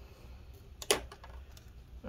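Hands handling parts inside an open laptop chassis: one sharp click just under a second in, with faint small taps around it.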